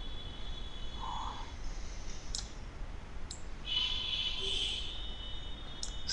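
Two faint computer mouse clicks, about a second apart, over a low steady background hum.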